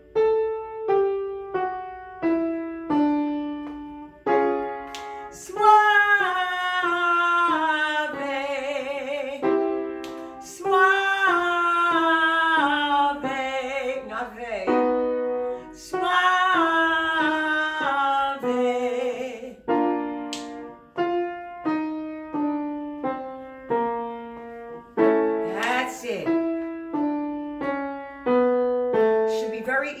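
Piano playing the accompaniment for a chest-voice vocal exercise, sounding a note or chord about once a second, while a woman sings three descending scale phrases in a full chest voice, each ending on a held note with vibrato.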